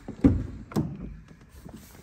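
A 2016 Range Rover Sport's front door being opened: two dull thunks about half a second apart as the handle is pulled and the door comes free.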